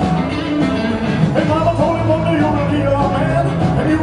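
A live rock-and-roll band playing, loud and steady.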